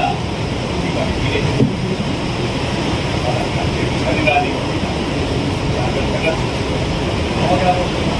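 Faint, distant speech of actors on a stage, carried over a steady hiss of hall noise.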